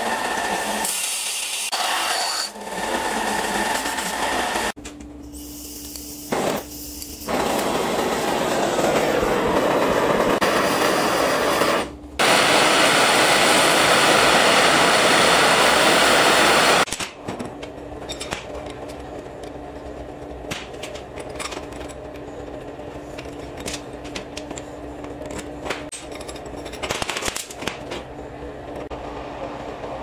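Workshop power tools on steel: a belt sander runs in loud, noisy stretches broken by short pauses through the first half. In the quieter second half a drill runs with a steady low hum and light ticks.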